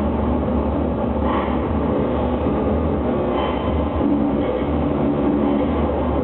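Live noise music from electronic equipment: a dense, steady wall of noise, heaviest in the low end, with brief brighter hissing swells about a second in and again past the three-second mark.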